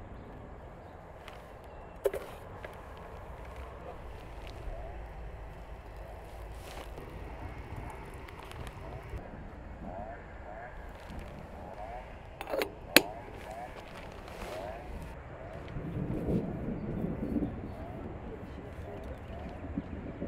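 Outdoor ambience with a few sharp clicks and knocks, the loudest a pair about two-thirds through, and talking near the end.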